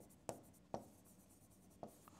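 Faint, short strokes of a pen writing on a board: three brief scratches spread over two seconds, otherwise near silence.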